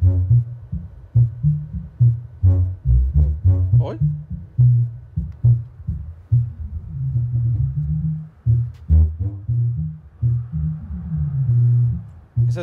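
Music playing loud through a large bass loudspeaker cabinet of a DJ sound system with its tweeters left out: heavy, shifting bass notes with almost no treble. A little singing voice still comes through above the bass, even though the crossover is already cut as low as it will go.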